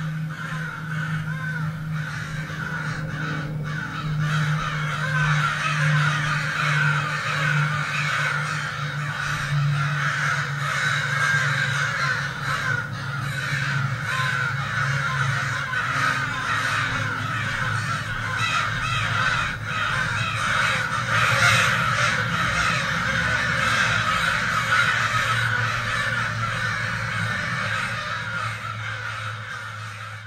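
A large flock of birds cawing in a dense, continuous chorus over a low steady hum. The sound fades out at the very end.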